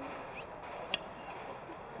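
Steady open-air background hubbub with a single sharp clink of tableware about a second in, as cutlery or china is knocked together at the table.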